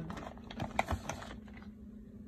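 A quick run of small clicks and taps from close handling, the strongest a little under a second in, stopping about a second and a half in. A steady low hum continues beneath.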